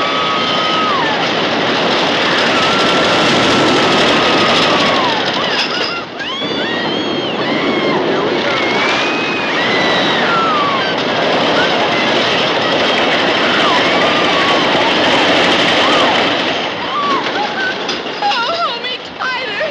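Roller coaster riders screaming in long, high, wavering cries over the continuous rattling rumble of the coaster cars running on the track.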